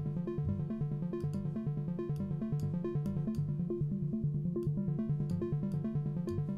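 Sylenth1 software synthesizer playing its 'Solaris 1' preset as a fast, steadily repeating pattern of short pitched notes. About four seconds in, the top end goes dull as the Filter A cutoff is turned down, then brightens again.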